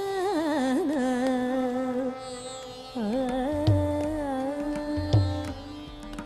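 Carnatic classical music in raga Mayamalavagowla: one melodic line with heavy gamaka ornamentation, gliding and oscillating in pitch. It dips briefly about two seconds in, and a few mridangam strokes join about three and a half and five seconds in.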